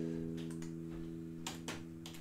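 Electric guitar chord ringing out and slowly fading, with a few light clicks, two pairs about a second apart.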